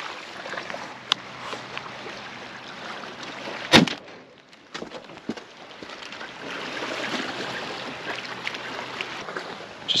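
A single loud shotgun shot about four seconds in, followed by a few lighter clicks, over the steady wash of sea water on the rocks.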